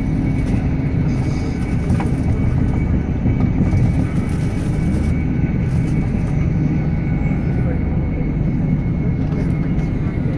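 Inside a coach of an InterCity 225 train (Class 91 electric locomotive with Mark 4 coaches) running at speed: a steady low rumble of wheels on rail, with a faint steady high tone over it.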